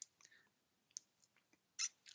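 Near silence in a pause between speakers, with a faint click about a second in and a brief mouth noise near the end, just before speech resumes.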